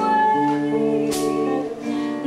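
Acoustic guitar accompaniment to a home sing-along, chords ringing on, with a fresh strum about a second in.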